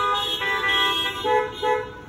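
Several car horns honking in short overlapping toots of different pitches, dying away near the end: a drive-in congregation answering the closing amen.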